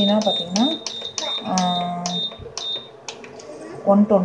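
Control-panel beeps from a V-Guard VIC 10 induction cooktop as its Down button is pressed again and again, stepping the setting down. The short high beeps come about three a second and stop about three seconds in.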